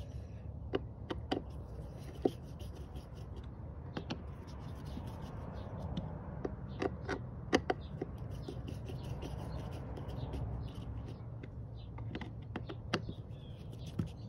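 A hand screwdriver driving the small screws of a new mass airflow sensor in a car's air intake: scattered small clicks and scrapes of metal and plastic, over a steady low background rumble.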